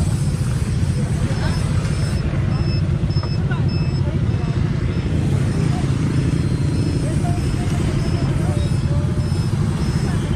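Motorcycle engine idling steadily, heard close up from the rider's seat. From about two seconds in, a faint high beep repeats about twice a second.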